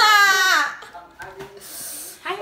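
A young woman's high, drawn-out vocal cry, one falling 'ah' about half a second long, in a loud, wordless outburst. It is followed by a quieter stretch with two light clicks.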